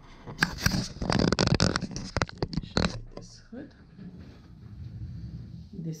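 Fabric rustling and scraping as a finished hoodie is handled and lifted, with a dense run of short crackles in the first three seconds that then dies down.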